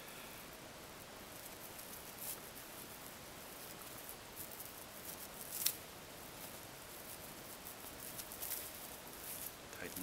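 Faint rustling and scratching of three-strand rope being worked by hand as strands are tucked over one and under one in a short splice, with one sharper click just past halfway.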